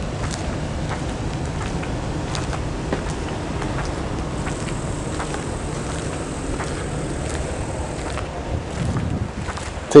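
Steady low rumbling outdoor background noise with a few faint clicks. A faint high thin whine comes in about four seconds in and stops about four seconds later.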